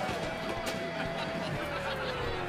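Party music winding down, with a held tone sliding slowly and steadily downward in pitch, like playback slowing to a stop as the music is cut off.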